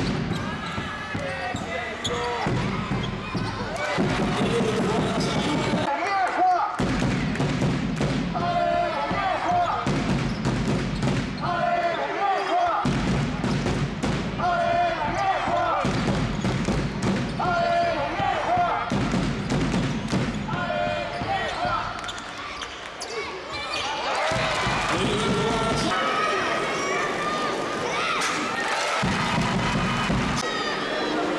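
Live basketball game sound in an arena: a ball bouncing on the hardwood court, with voices and crowd sound throughout.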